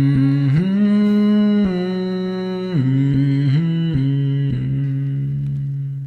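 A man's voice humming a slow melody in long held notes that step up and down in pitch, part of a beatbox routine.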